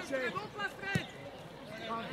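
Footballers calling out to each other across the pitch, with one sharp thump of a football being kicked about halfway through.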